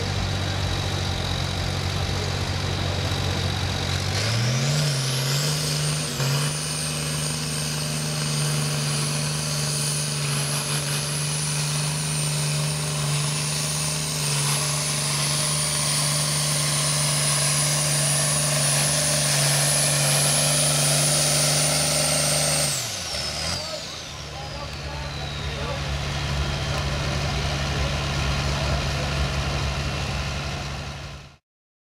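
International tractor's diesel engine revving up about four seconds in and held at high revs under full load while pulling the sled, with a high whistle that rises with it. Near the end of the pull the revs drop off sharply, the whistle falls away, and the engine settles back to idle.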